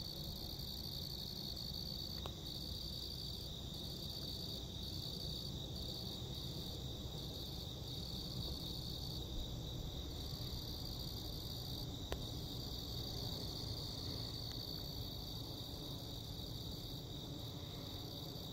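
Steady chorus of night insects, a continuous high chirring, over a faint low rumble, with a couple of faint clicks.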